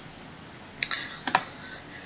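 Three quick clicks on a computer, a little under a second in, advancing a presentation slide, over faint room tone.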